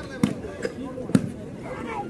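Two sharp smacks of a shooting ball being struck, about a second apart, over faint voices on the court.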